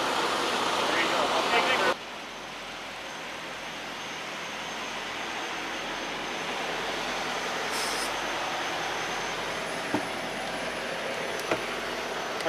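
Steady engine noise from idling vehicles. It is loud for the first two seconds, then drops suddenly to a quieter, steady hum that slowly grows, with a short hiss about eight seconds in and a couple of faint clicks near the end.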